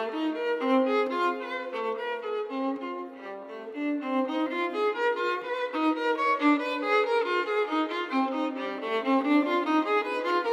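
Unaccompanied violin playing contemporary classical music: a quick passage of many short bowed notes, often two or more sounding at once as double stops, briefly quieter about three seconds in.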